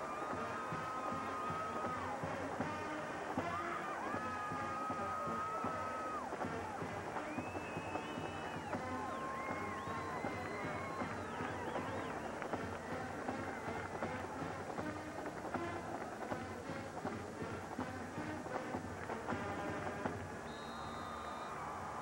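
Marching band playing held brass notes over the noise of a cheering stadium crowd celebrating a touchdown.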